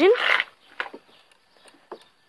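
A voice trailing off on a rising note and a brief breath, then near quiet with a few faint clicks from a scooter's hand brake lever being gripped and moved.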